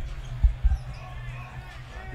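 Basketball being dribbled on a hardwood court: a few short, deep thuds in the first second over a steady low hum.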